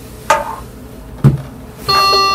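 Two short knocks about a second apart as an infant mannequin and its tubing are handled and set down on a linen-covered table. Background music with sustained tones starts near the end.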